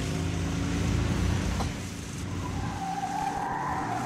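Road-vehicle engine sound effect running, then a tyre screech starting a little past halfway and rising into a steady squeal: a hard, sudden braking.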